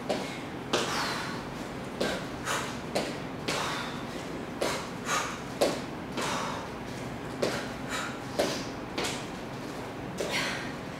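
Sneakered feet stepping and landing on a wooden floor during repeated forward lunges, a short thud about every half second to second.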